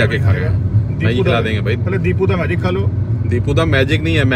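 Steady low rumble of a car driving, heard from inside the cabin, under men talking.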